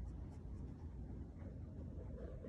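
Faint rustling and small scratching sounds of a cat pawing and nibbling at yarn on a crocheted blanket, over a low room hum.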